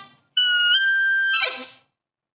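Harmonica playing a short intro jingle: the end of a phrase fades out, then after a brief gap one high held note steps slightly up in pitch and fades away.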